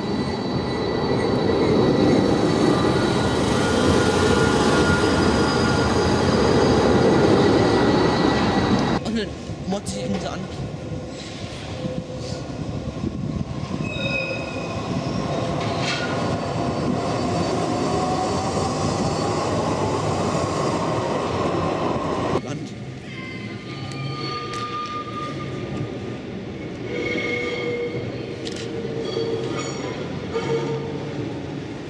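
Electric trams on street track: a low-floor tram runs in alongside the platform close by, with loud wheel-on-rail rumble and a steady high whine. After a sudden cut, another tram rolls past with a rising motor whine, and near the end a quieter tram approaches.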